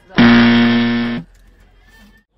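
Game-show 'wrong answer' buzzer sound effect: one loud, low, steady buzz lasting about a second, starting and cutting off abruptly, marking a passed question.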